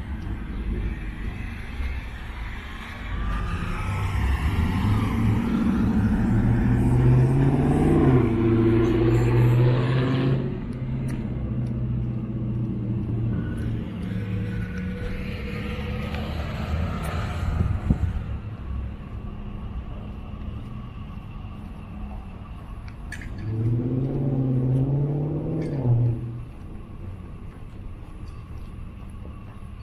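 Street traffic: a motor vehicle drives past, its engine note swelling over several seconds and loudest about eight to ten seconds in, and a second vehicle passes briefly near the end.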